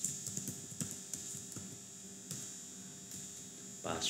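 Computer keyboard keystrokes: irregular soft clicks as a password is typed, thickest in the first second, over a steady background hum.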